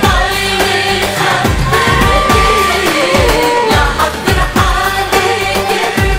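A woman singing an Arabic popular song into a microphone over amplified backing music, with a steady, deep drum beat.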